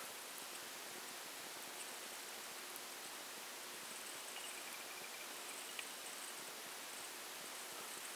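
Faint steady hiss of room tone, with a faint high tone for about a second and a half near the middle.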